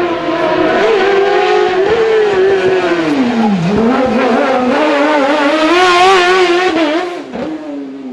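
Race car engine running hard through a slalom course. The engine note falls steeply about three and a half seconds in, then climbs again as the car accelerates, and fades near the end.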